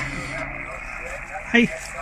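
Steady hiss of HF band noise from the speaker of an RS-918 SDR transceiver tuned to the bands, with the highs cut off sharply as in a receiver's voice filter. A woman shouts "Hey!" near the end.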